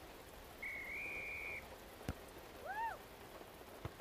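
Steady rain, with a referee's whistle blown once soon after the start and held for about a second. A short rising-and-falling call comes about two and a half seconds in.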